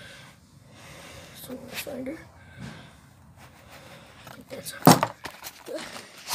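Brief muffled voices and handling noise, with one sharp knock just before five seconds in.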